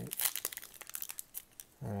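Foil wrapper of a Panini Prizm trading-card pack crinkling as fingers work at its top seal to open it, with a dense run of crackles in the first half second and scattered ones after.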